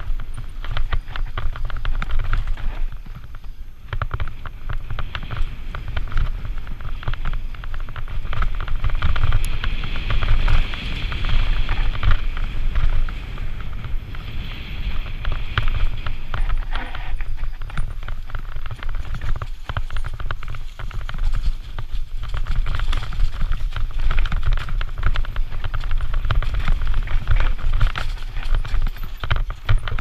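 Santa Cruz Nomad full-suspension mountain bike descending rough dirt singletrack at speed: wind rumble on the helmet-mounted camera's microphone, with tyres on loose dirt and a steady clatter of knocks and rattles as the bike hits bumps.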